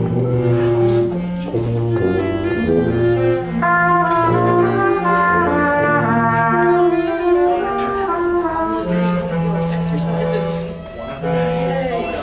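A roomful of student brass and other band and orchestra instruments each trying out held notes on their own at the same time, overlapping and not in time together. The players are working out the notes of a scale pattern in concert B-flat.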